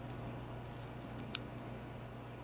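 Quiet room tone with a steady low hum, and a single faint click a little past the middle.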